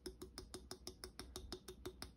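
Hollow clear plastic craft bauble clicking faintly and evenly in the hand, about six knocks a second, as it is shaken to spread the yellow pigment inside it; the clicking stops suddenly at the end.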